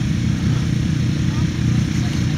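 Several quad ATV engines idling together: a steady low rumble with faint voices in the background.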